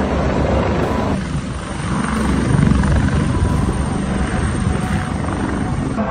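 Airbus helicopter flying in low and landing, its rotor and engines running with a loud, steady, pulsing rumble.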